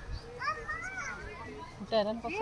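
Children's voices: a child's high, wavering call about half a second in, with more talking starting near the end.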